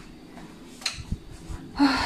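Quiet room with a faint click and a few low knocks, then a sharp, loud intake of breath near the end.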